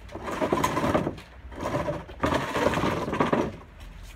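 Wiping down a garden tabletop by hand: two long rubbing strokes across the surface, the second starting about a second and a half in and lasting nearly two seconds.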